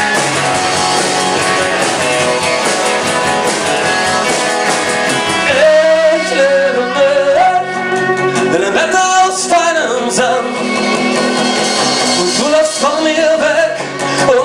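Live rock band with acoustic guitar, electric guitar, bass guitar and a Pearl drum kit playing a song. The first few seconds are instrumental; about halfway in, a singing voice enters over the band.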